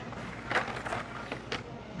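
Hot Wheels blister-packed cars on their card backs being shuffled by hand in a cardboard display box: plastic and card rustling with a few sharp clacks, the loudest about half a second in.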